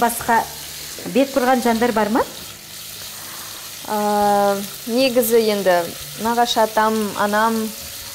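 Food sizzling in a frying pan as it is stirred with a spatula, under a woman's voice that holds one steady note about halfway through.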